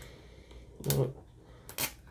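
The plastic seal on a tin being picked at and peeled off by hand, giving two short crinkly rasps, the sharper one near the end. A short "Oh" comes with the first.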